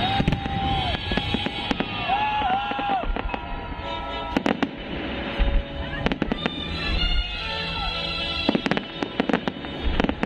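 Aerial fireworks bursting in rapid crackles and bangs over music from the pyrotechnic show's soundtrack. Dense clusters of bangs come about halfway through and again near the end.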